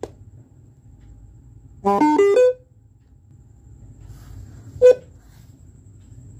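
Bluetooth speaker module's power-on chime: a quick run of electronic notes stepping in pitch about two seconds in, followed by a single short beep near the end.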